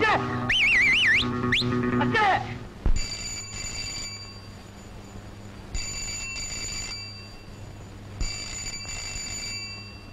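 A telephone ringing in a double-ring pattern, three rings about two and a half seconds apart. Before the first ring comes a wavering, warbling high-pitched sound.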